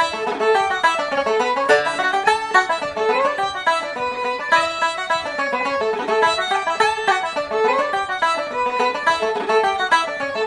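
Fiddle and banjo playing a reel in D together, a quick, even run of notes with the picked banjo and the bowed fiddle carrying the tune.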